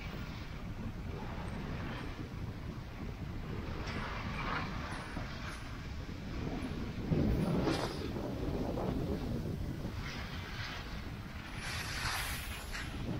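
Wind rushing over the microphone of a moving skier, with the hiss of skis sliding and scraping on packed, groomed snow swelling every couple of seconds, loudest about seven seconds in.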